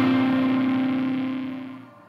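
The final held note of a rap song's instrumental ringing out and fading away after the beat has stopped.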